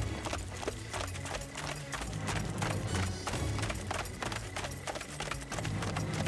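Hoofbeats of galloping horses, a rapid, even run of hoof strikes, over background music.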